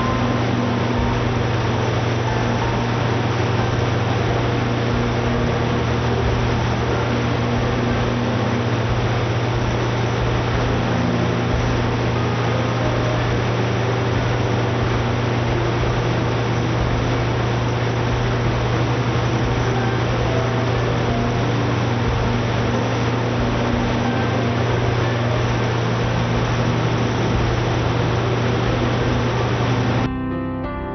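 Coates CSRV (spherical rotary valve) industrial engine generator running on natural gas under full load: a steady, unbroken engine drone with a strong low hum and dense mechanical noise above it.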